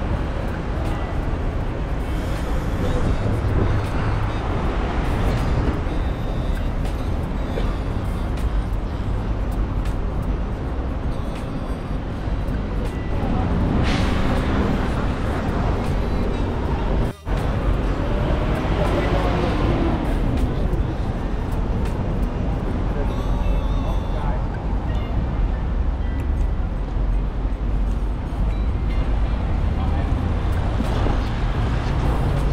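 Busy city street ambience: road traffic running, with voices of passers-by and music mixed in. The sound drops out for an instant a little past halfway.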